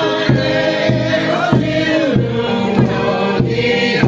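A group of people singing together in chorus, voices holding long notes, with a steady beat under the singing.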